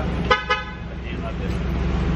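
Two short car horn beeps in quick succession, about a fifth of a second apart.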